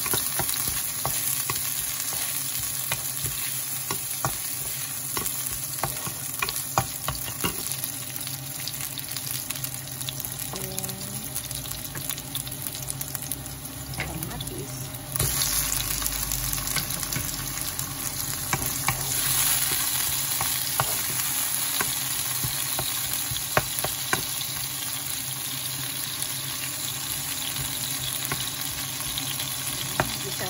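Sliced onion and ginger sizzling in hot oil in a nonstick wok, stirred with a wooden spatula that scrapes and taps against the pan. About halfway through the frying gets louder and brighter as sliced tomatoes go into the pan.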